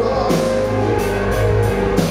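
Rock band playing live: electric guitar, bass and a drum kit with cymbal strokes, in a passage without singing.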